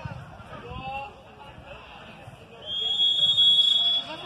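Referee's whistle blown once, a steady high tone lasting about a second and a half near the end, signalling that the penalty kick may be taken. Faint voices are heard before it.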